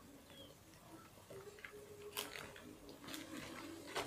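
A few faint clicks and light knocks of small plastic toy figures being handled and set down on a table, over quiet room tone.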